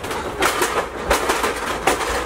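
A physical scuffle: irregular knocks, bumps and clattering as people shove and grapple against a desk and office equipment.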